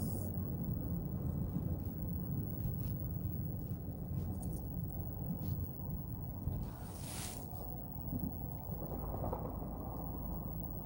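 Steady low rumble of a car's cabin while it rolls slowly along a wet road, with a few faint clicks and a brief hiss about seven seconds in.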